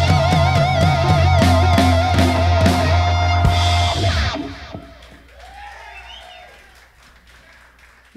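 Live funk band of electric guitar, keyboard bass and drum kit ending a song: the guitar holds a note with wide vibrato over the bass and drums, then the band stops together about four seconds in and the sound dies away, leaving only faint scattered sounds.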